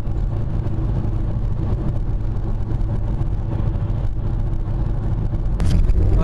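Steady low rumble of a car's engine and tyres heard from inside the cabin while driving at speed, stepping a little louder near the end.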